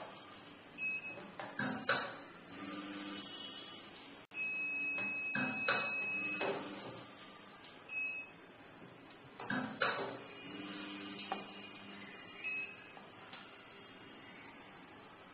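Automatic tea weighing and filling machine cycling through its doses. Its feeder hums in spells, loose tea drops with clicks and knocks into plastic tubs, and the machine gives short electronic beeps, one held for about two seconds near the middle.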